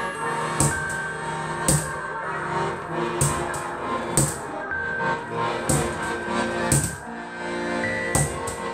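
Bajan, a chromatic button accordion, holding sustained chords, with about six sharp percussion strikes, roughly one a second, from sticks beaten on a wooden box.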